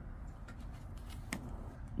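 Scratch-off lottery tickets handled, a faint light rustle of card stock, with one short sharp click a little over halfway through.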